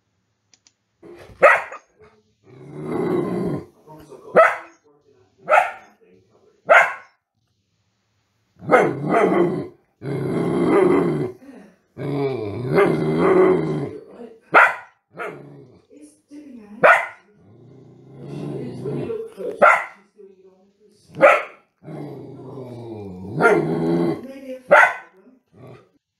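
Miniature poodle barking at a postman: a string of short, sharp, high-pitched barks, about nine in all, with longer, lower stretches of sound between them. The barks are high in tone because the dog is small and can't do the deeper tones.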